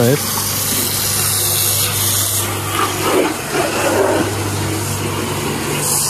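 A steady low hum with a constant hiss over it, and faint voices in the middle.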